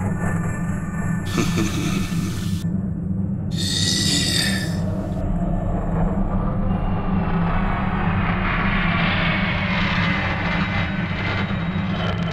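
Film soundtrack: a low, steady droning music bed with a heavy rumble underneath. Two brief noisy swells come in the first five seconds, and a hiss-like layer builds in the second half.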